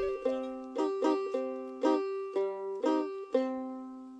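Đàn ta lư, the plucked string lute of the Vân Kiều people, playing a lively melody. The notes are plucked one at a time, about two or three a second, each ringing and fading.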